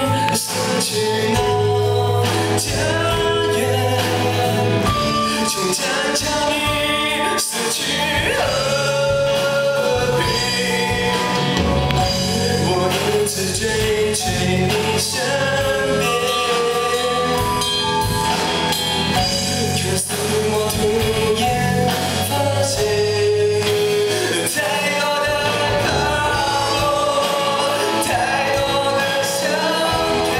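Rock band playing live: electric guitars, bass guitar and drum kit, with a male lead singer, through a PA.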